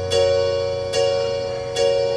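Electronic keyboard playing the same chord three times, struck about every 0.8 s, each one ringing and fading before the next.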